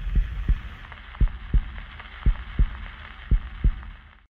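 Low thumps in pairs, about one pair a second, in a heartbeat rhythm, over a fading low rumble; it all cuts off just after the end.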